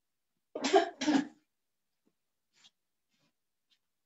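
A person coughing twice in quick succession, about half a second in.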